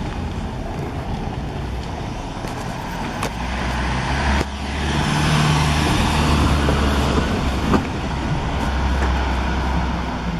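A motor vehicle's engine running close by over street noise, its low hum growing louder about halfway through.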